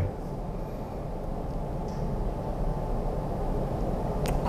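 A low, steady rumble that grows slightly louder over the few seconds.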